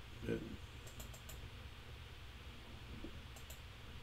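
Faint clicking of a computer keyboard: three quick clicks about a second in and two more about three and a half seconds in.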